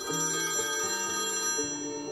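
A mobile phone ringtone on an iPhone announcing an incoming call, its high tones starting abruptly, over background music.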